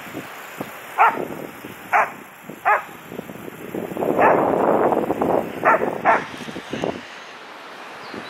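Short barking calls from an animal, about six of them spread over five seconds, with wind buffeting the microphone in the middle.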